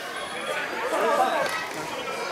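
Several people talking and calling out at the same time, the voices overlapping.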